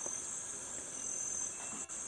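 Steady, high-pitched chorus of rainforest insects.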